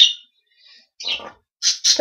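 Breath sounds between spoken phrases: the trailing hiss of a word, a soft breathy sound about a second in, and two quick sharp intakes of breath just before speech resumes.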